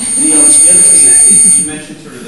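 A loud, steady high-pitched tone over people talking. It cuts in right after a brief dropout of all sound and stops about one and a half seconds later.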